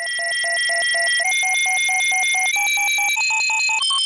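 Electronic beeping sound effect: a rapid pulsing beep, about five a second, over a steady high tone. The whole pattern steps up in pitch four times, the steps coming closer together.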